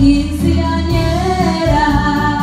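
Music with a woman singing, holding long notes.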